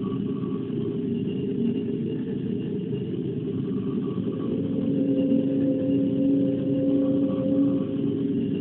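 Electronic noise drone from a SunVox synth processed through a Korg Kaoss Pad 3 sampler/effects unit: a dense, muffled low rumble with nothing above it. About halfway through, two steady held tones come in over the rumble and it grows a little louder.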